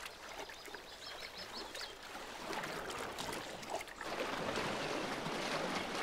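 Water splashing and sloshing as animals wade through a shallow river, getting louder about four seconds in as a herd of bison pushes through the water.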